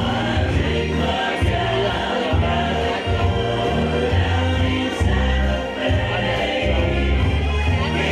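A band playing a song live, with a steady bass line under sustained pitched notes and singing voices.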